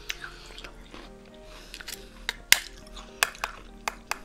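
Close-miked eating of bead ice cream from a purple white-chocolate shoe: a metal spoon scooping and clicking against the shoe and in the mouth, heard as a string of sharp clicks with the loudest about two and a half seconds in. Soft background music plays underneath.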